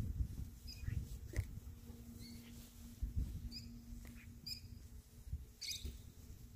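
A few short, high chirps from small birds, scattered irregularly, over low rumbling thumps; a faint steady hum starts about two seconds in.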